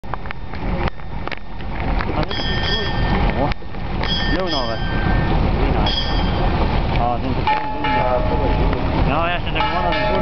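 Voices calling out over a steady low rumble, with several sharp knocks in the first few seconds and a few brief high steady tones in the middle.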